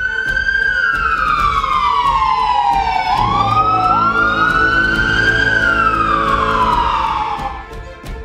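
Siren wailing in a slow fall, rise and fall of pitch. A second siren tone overlaps from about three seconds in.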